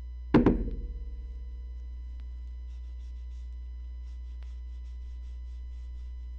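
A single loud thunk about a third of a second in, ringing briefly. This is followed by faint, repeated scratchy strokes of a cleaning cloth rubbing over a fabric handbag.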